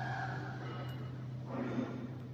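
Steady low electric hum of factory machinery, with a short rustling noise about a second and a half in.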